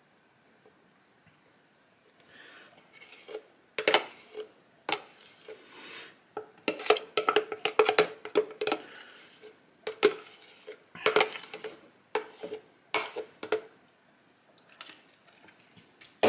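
A metal spoon scraping and knocking inside a plastic shaker cup, getting out the last of a thick protein cream. The clicks and scrapes are irregular and start about two seconds in.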